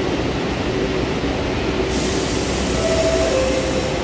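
New York City subway train approaching through the tunnel: a steady rumble that brightens about halfway through, with a short high tone near the end that steps down in pitch.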